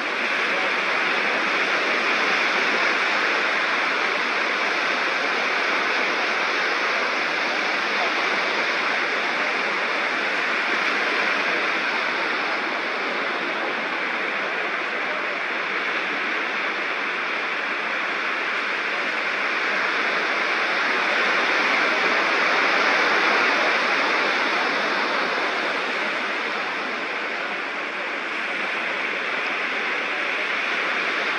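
Ocean surf washing up a sandy beach: a steady rushing wash that swells and eases, loudest a little past the middle.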